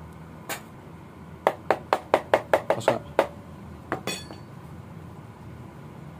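Sharp metal clinks and knocks, about nine in quick succession, as a motorcycle muffler's inlet pipe is worked into the muffler body until it seats. A last knock follows, with a brief metallic ring.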